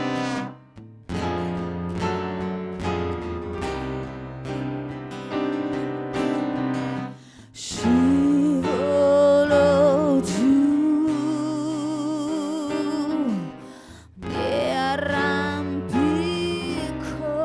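A live band plays a song: sustained instrumental chords open it, broken by two short pauses, then a woman's voice comes in about eight seconds in, singing long held notes with vibrato over the accompaniment.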